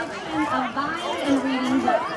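Spectators in the stands chatting close by, voices talking over one another.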